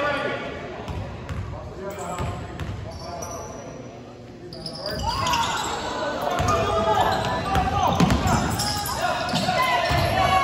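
A basketball bouncing on a hardwood gym floor during play, with players and spectators calling out; the voices get louder about halfway through as play picks up.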